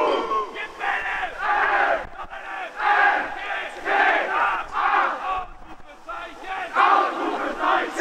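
A team of teenage footballers in a huddle shouting a chant together. The loud shouts in unison come about once a second.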